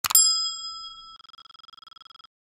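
A click, then a bright bell-like ding that rings out and fades; about a second in the ringing turns into a fast flutter. It is the notification-bell sound effect of a subscribe animation.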